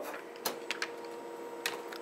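A few light clicks and taps from the open plastic paper tray of an HP Color LaserJet M252dw as a sheet of transfer foil is laid in it and aligned by hand, over a faint steady hum.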